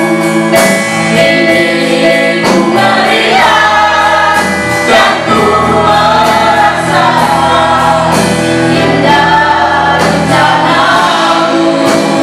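A small mixed group of men and women singing an Indonesian worship song in unison into microphones, with electronic keyboard accompaniment holding sustained chords.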